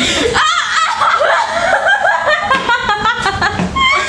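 Two young women laughing together, overlapping giggles and chuckles that run on without a break.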